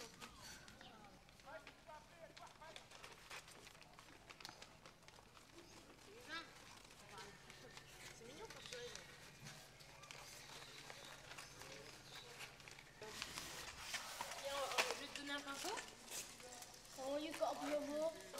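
Faint, indistinct voices of children and adults outdoors, with scattered light clicks and knocks. The voices and knocks grow louder about two-thirds of the way in.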